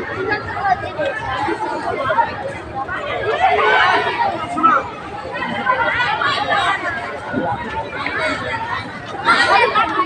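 Chatter of many people talking at once, a crowd of students and teachers whose voices overlap so that no single speaker stands out.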